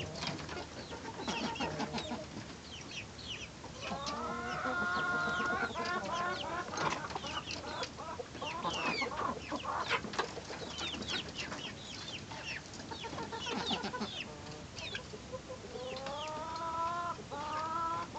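Half-grown chicks peeping with many short, high chirps while they feed, mixed with longer, lower clucking calls from the flock about four seconds in and again near the end.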